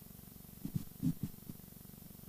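A low, steady hum with a fine rapid flutter, with a few faint, short low sounds about halfway through.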